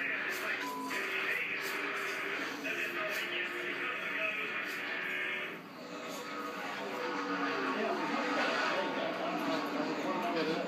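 Television sound from a NASCAR race broadcast: music and voices, without clear commentary.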